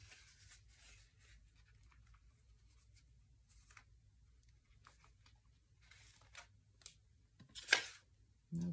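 Faint rustling and light rubbing of paper being handled on a printing plate, with one louder, brief papery rustle near the end as the painted print is peeled up off the plate.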